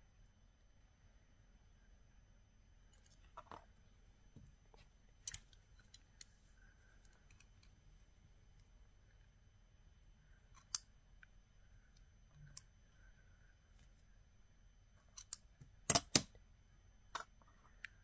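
Scattered small metallic clicks and taps as brass filigree pieces and a metal barrette clip are handled and set down on a craft mat, with a close pair of sharper clicks near the end, the loudest.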